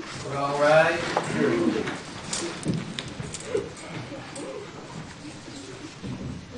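Courtroom room sound: a drawn-out wavering voice in the first second, then low murmuring and faint shuffling and rustling of people moving about.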